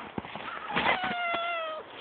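A domestic cat meowing: one long meow starting about a second in, falling slightly in pitch.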